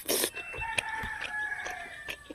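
A rooster crowing: one long call that starts about a third of a second in and drops in pitch toward its end, heard over close clicks of eating and handling food.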